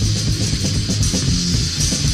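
Punk rock recording: a full band with a drum kit, playing loud without a break.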